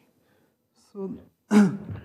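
A man clears his throat once, sharply, about a second and a half in, alongside a few spoken words.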